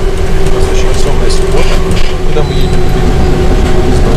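Inside a moving city bus: a loud low rumble from the drive, with a steady whine held at one pitch.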